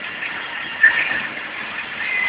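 Steady running noise of a van on a wet road, heard from inside the cab, with a brief, louder, higher-pitched sound a little under a second in.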